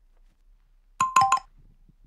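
Smartphone notification alert: three quick chiming notes about a second in, a calendar reminder going off.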